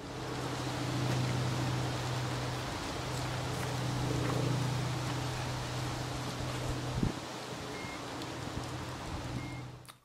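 Silenced trailer-mounted Bauer diesel irrigation pump unit running steadily: an even low engine hum under a broad rushing noise, with a single click about seven seconds in.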